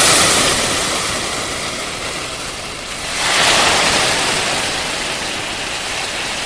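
A loud rushing noise, steady and with no pitch, like a whoosh or rushing water. It swells at the start and again about three seconds in.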